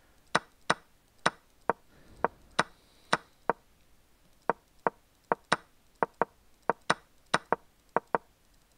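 Chess.com's wooden piece-move sound, a short clack each time the game review steps forward one move. About eighteen clacks come at an uneven pace of roughly two a second, with a pause of about a second midway.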